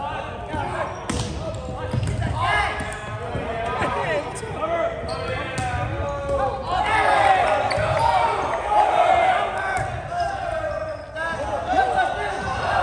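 Volleyball rally in a gymnasium: a few sharp slaps of the ball being struck, amid players' and spectators' voices calling out, echoing in the hall.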